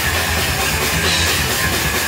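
Live hardcore punk band playing, loud and steady: electric guitars through amplifiers over a full drum kit.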